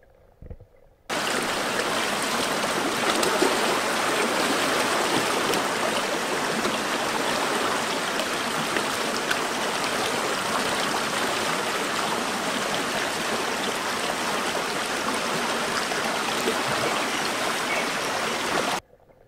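Stream water rushing steadily over rocks, starting suddenly about a second in.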